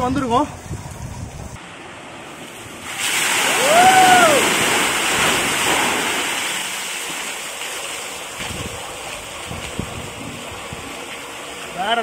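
A tipping bucket dumps water onto a person standing beneath it. A sudden loud rush of pouring, splashing water starts about three seconds in, is loudest a second later, then tapers off over the following seconds. A single rising-and-falling yell comes as the water hits.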